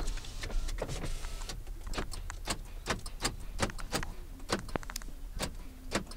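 Steady low hum of the 2012 Chevrolet Impala's idling engine inside the cabin, under a string of sharp, irregular clicks and knocks, a few a second, while the power windows are worked.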